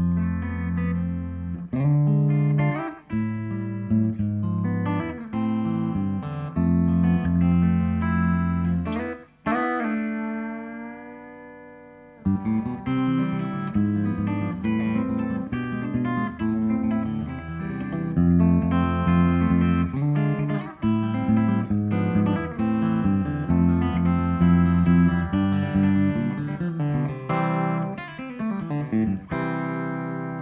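Single-pickup Esquire electric guitar with a Peter Florence Voodoo bridge pickup, played through a Fender Blues Junior amp with a compressor and a touch of overdrive. The tone knob is backed off for a mellow, slightly jazzy sound, with little top end. Rhythmic chords and bass notes, with one chord left ringing and fading away about ten seconds in before the playing picks up again.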